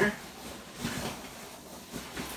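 Items being rummaged through in a cardboard box: soft rustling with a few light knocks about a second in.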